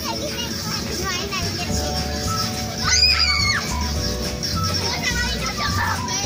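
Children playing and chattering, with one loud, high-pitched squeal about three seconds in, over steady background music.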